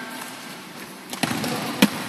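Futsal balls struck and bouncing on a hard indoor court, echoing in a large hall: a few thuds a little past a second in, then one sharp, loud ball strike near the end.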